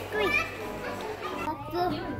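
Children's and adults' voices talking over the hubbub of a busy shop. About one and a half seconds in, the background noise suddenly drops away.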